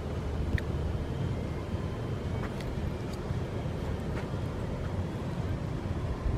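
Low, steady outdoor rumble with a few faint clicks, as heard on a handheld camera's microphone while walking a residential street.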